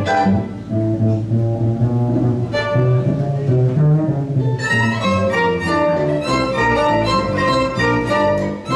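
Acoustic string band playing hot jazz: fiddles over an upright double bass, with the fiddle playing growing busier and fuller about halfway through.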